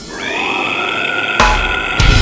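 Melodic deathcore song at a break: the full band drops out and a single sustained note slides up in pitch and rings on its own. About one and a half seconds in, a hard hit with heavy low end comes in, and the full band crashes back in at the end.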